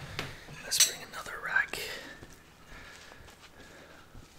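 Short rustles and knocks of handling, the sharpest about a second in, with a brief soft murmured voice, then quieter rustling of hands being dried on a cloth towel.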